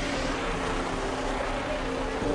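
Steady street noise of parked buses idling, with voices from a crowd nearby.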